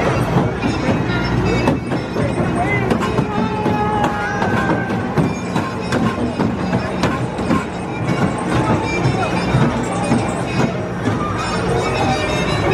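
A Chance Big Dipper junior roller coaster train rolling along its track, mixed with people's voices and music.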